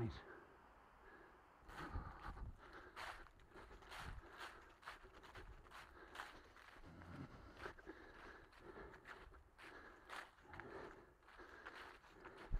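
Faint footsteps on grass, about two steps a second.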